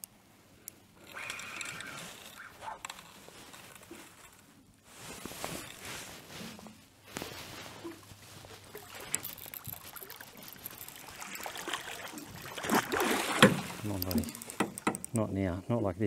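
Water sloshing and knocking against a kayak hull, with rustling gear and a spinning reel being wound, during a close fight with a hooked barramundi. The noise grows louder over the last few seconds, with short voice sounds from the angler.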